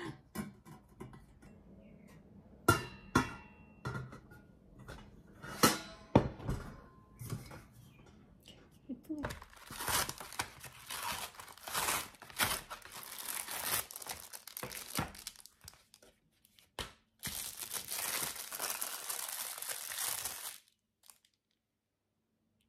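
Stainless steel steamer rack clinking and knocking against a stainless pot as it is set in place, with a few sharp metal strikes that ring briefly. Then a kraft paper mailer envelope is torn open and crinkled for about ten seconds, stopping shortly before the end.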